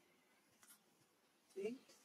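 Near-quiet ambience with a faint click, then one short, low voice sound near the end.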